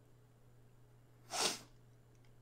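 A man's single short, sharp breath noise through the nose, about one and a half seconds in.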